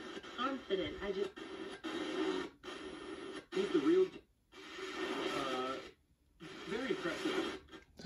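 A man's voice from an FM radio broadcast, played by a Quad FM3 tuner through small computer speakers. The sound drops out to near silence a few times as the dial is turned and the tuner's muting cuts in between stations.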